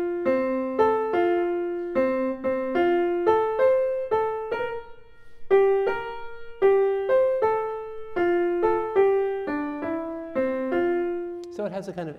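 Grand piano played one note at a time: a simple single-line melody in the middle register, about three notes a second, each struck note fading before the next, with a brief pause about halfway through.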